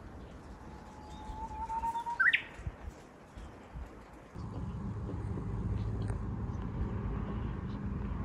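Japanese bush warbler (uguisu) singing: one long, nearly steady whistled note, then a quick sharp upward flourish, the loudest moment about two seconds in. A low steady rumble starts about halfway through.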